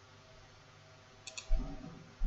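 Computer mouse clicking twice in quick succession about a second and a quarter in, followed at once by a louder, dull thump.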